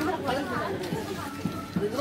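Indistinct chatter of several people talking.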